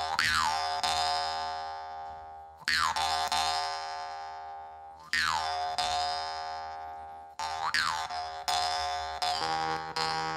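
Jaw harp (vargan) twanging: one steady buzzing drone, plucked hard about every two and a half seconds with lighter plucks between. Each pluck brings a falling 'wah' sweep from the player's changing mouth shape, then a slow fade. A lower steady tone joins near the end.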